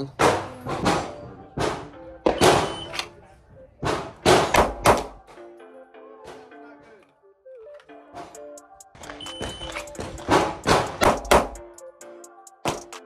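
Background music over 9mm pistol shots from a Glock fitted with a Radian Ramjet compensator and Afterburner barrel. Near the end, a short shot-timer beep is followed about two seconds later by a quick double tap.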